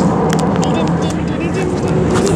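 Jet airliner cabin noise in flight: the engines and airflow make a loud, steady drone with a constant low hum running through it.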